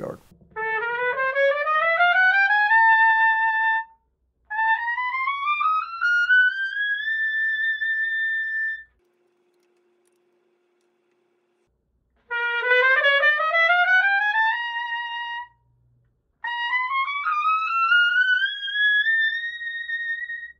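Vincent Bach Artisan AP-190 piccolo trumpet playing four rising runs into the high register, each climbing to a held top note. The first two are played on the A leadpipe; after a pause of a few seconds to change pipes, the last two are played on the B-flat leadpipe.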